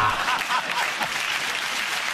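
Studio audience applauding steadily, a dense crackle of many hands clapping.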